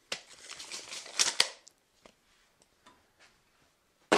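Steel tape measure blade retracting into its case with a light rattle for about a second and a half, ending in two sharp clicks as it snaps home.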